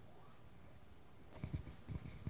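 Faint room tone, then about one and a half seconds in a run of soft, irregular thumps and scratchy rustles begins: handling noise from a microphone being picked up.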